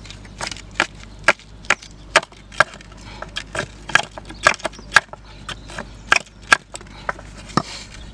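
Hammer striking a rusted nail in an old pallet board to knock it out: a run of sharp wooden knocks, about two a second.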